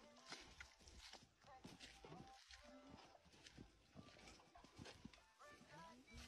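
Faint footsteps and rustling on a dry dirt path through farm vegetation: scattered soft knocks and crunches, with faint voices in the background.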